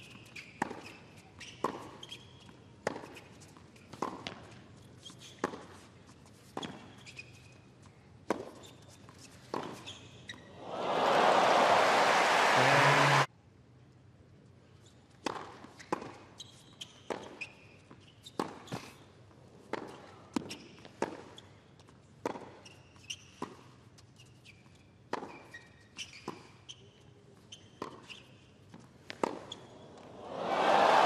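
Tennis ball struck back and forth in two hard-court rallies, racket hits about once a second with short squeaks between them. Between the rallies, about a third of the way in, crowd applause breaks out and cuts off suddenly; applause rises again at the end.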